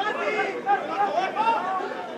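Overlapping shouts and calls from many voices at a football match: players on the pitch and spectators in the stands calling out during play.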